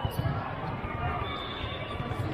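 Murmur of voices and scattered low thuds of volleyballs, echoing in a large sports hall.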